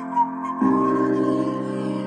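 Music played through a Harley-Davidson Street Glide's upgraded stereo: sustained chords with a melody line over them, and a fuller, louder chord with bass coming in just over half a second in.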